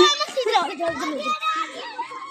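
Young children's voices while playing, with a loud high-pitched squeal at the start followed by wordless chatter and babble.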